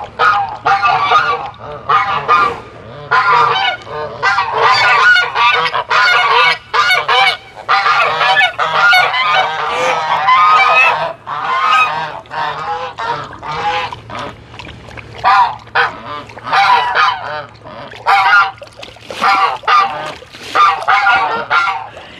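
A flock of white domestic geese honking loudly, call after call, with many calls overlapping.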